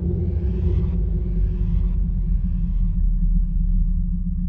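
Deep, steady low rumbling drone with a faint held tone above it. Soft whooshing swells rise about once a second and die away near the end.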